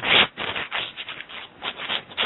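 Irregular rustling and rubbing noise: a string of short scrapes, the loudest right at the start.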